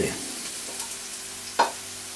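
Chopped onion and green pepper sizzling steadily in a frying pan as a sofrito is gently fried, with one sharp knock about one and a half seconds in.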